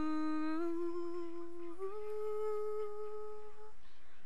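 A woman humming the closing notes unaccompanied: three long held notes, each a little higher than the last, the last one stopping shortly before the end.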